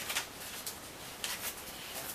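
Paper being handled: a few short, soft rustles of a greeting card and its letter, one near the start and another a little past the middle.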